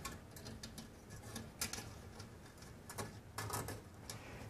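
Faint handling sounds of electrical wires being tucked up into a metal recessed light can: scattered light clicks and rustles, with a short cluster near the end.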